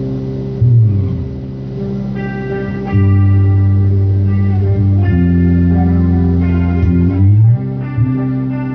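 Electric bass guitar played through an amp, holding long low notes, with a note sliding up just under a second in and again near the end, over backing music with guitar. The bass is louder from about three seconds in.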